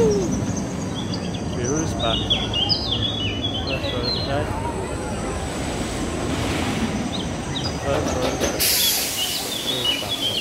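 Roller coaster train running along its steel track, a steady low rumble, with birds chirping over it in two spells and a brief hiss near the end.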